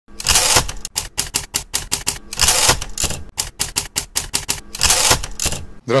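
Typewriter sound effect: rapid, irregular key strikes, broken by three longer rasping bursts of about half a second each, near the start, at about two and a half seconds and at about five seconds.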